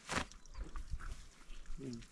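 Fleece jacket being pulled off: one brief loud swish of fabric just after the start, then faint scattered rustling.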